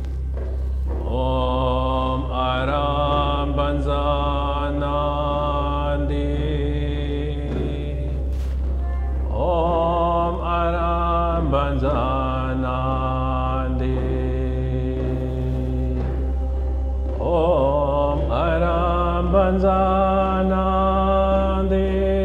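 A man's voice chanting a Tibetan Buddhist mantra in three long held phrases, each opening with a rising slide in pitch, over a steady low hum.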